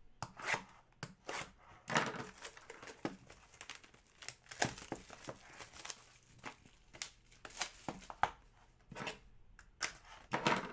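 Plastic shrink-wrap being torn and crinkled off a sealed trading card box, with irregular rustles and light knocks as the cardboard box is handled.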